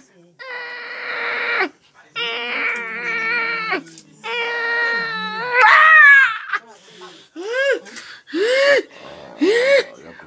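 An injured man crying out in pain while his wounded leg is being cleaned and dressed. First come three long, held wails of "aah", then short cries that rise and fall in pitch, about one a second near the end.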